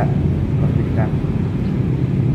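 Steady low background rumble of outdoor noise under a pause in a man's speech, with a short voiced sound at the start and another about a second in.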